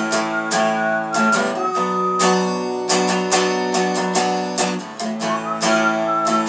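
Hollow-body archtop guitar strummed in a steady rhythm of chords, with a thin, slightly wavering high tone held over them.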